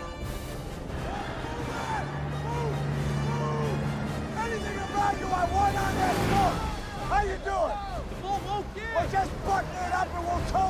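Film soundtrack: orchestral score with held low notes, joined from about two seconds in by many short rising-and-falling cries that come thicker and faster in the second half.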